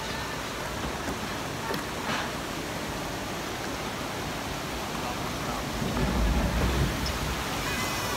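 Water rushing along a log flume's channel as the log boat floats through it: a steady wash that grows louder, with a low rumble, in the last couple of seconds as the boat nears a churning cascade beside the channel.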